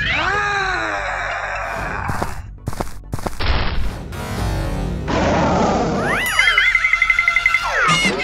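Cartoon fight sound effects over music. It opens with a sound whose pitch falls, then a quick run of sharp hits a little over two seconds in, and in the last three seconds a long wobbling boing.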